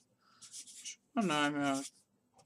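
Felt-tip marker strokes squeaking and scratching on a white writing surface as numbers are written, followed about a second in by a man's voice holding a drawn-out sound for under a second.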